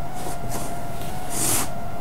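Faint rustling of a fleece blanket and its packaging being pulled out of a cardboard box, with a short hiss about one and a half seconds in.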